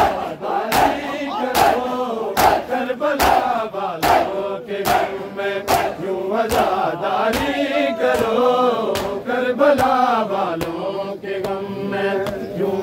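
Matam: a crowd of men slapping their bare chests in unison, a sharp slap roughly every 0.8 seconds, under a group of men chanting a noha.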